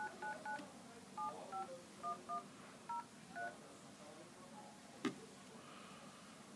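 iPhone dial-pad key tones as a phone number is keyed in: nine short two-tone beeps, three in quick succession and then six more spaced out over the next three seconds. A single sharp click follows about five seconds in.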